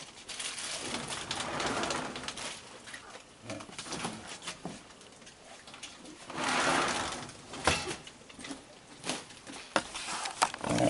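Raccoons vocalizing with low churring, cooing calls: a longer call about a second in and a louder one past the middle, with a few sharp taps near the end.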